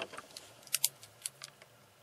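A handful of short, sharp clicks from plastic pens being handled as one pen is put down and another picked up; two clicks come close together a little under a second in.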